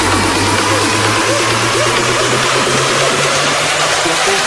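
Electronic dance music from an electro house mix: a held low bass note with synth notes arching up and down above it.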